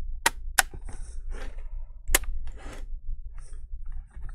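Sharp plastic clicks and knocks from a gaming laptop's case being handled and turned over on a desk: two quick clicks just after the start and another about two seconds in, with softer scuffing between them.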